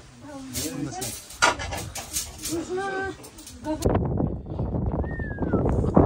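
Untranscribed voices and a few sharp clinks, then after a sudden change about four seconds in, wind rushing on the microphone and one short, high whine falling in pitch from a young puppy.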